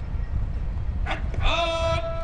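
A man shouting a military drill command: a short call about a second in, then one long drawn-out note held for about a second, over a low steady rumble.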